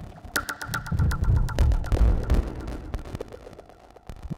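Analog synthesizer patch sounding: a quick, uneven run of short pitched blips over low throbbing bass. It thins out and fades in the last second or so.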